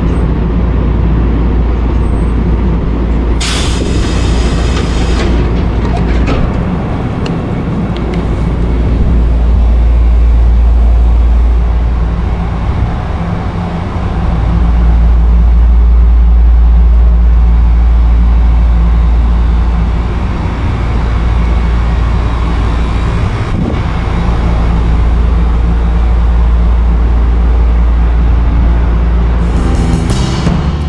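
Nishitetsu electric commuter train standing at a station, its running equipment giving a steady low rumble and hum, with a short burst of hissing air about three and a half seconds in.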